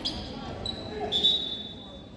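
Referee's whistle on a basketball court: a short high steady tone, then a louder one at the same pitch held for nearly a second, over chatter in the gym.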